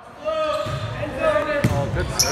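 Voices calling out in a reverberant gymnasium, with one sharp volleyball impact about one and a half seconds in.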